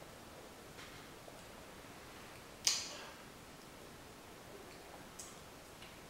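Quiet room while a man sips beer from a glass, with one short, sharp breathy sound about two and a half seconds in and a couple of faint ticks.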